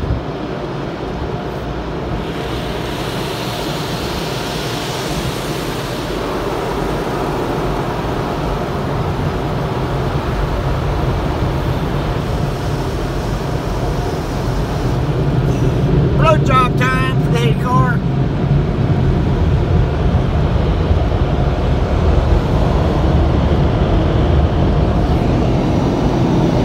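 Automatic car wash heard from inside the car's cabin: a steady rushing of water spray and wash machinery over the body and windshield, growing louder about two thirds of the way through.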